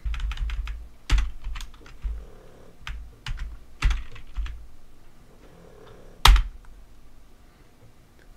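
Typing on a computer keyboard: scattered, irregular keystrokes with dull low knocks under them, the loudest strike a little after six seconds in.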